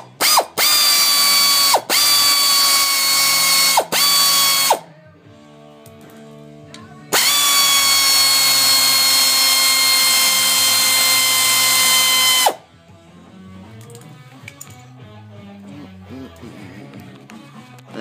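A small handheld power tool's motor whining steadily in three runs, the last about five seconds long, each winding down as it stops, as it unscrews the oil filter cover bolts on a 2009 Kawasaki KLX250 engine.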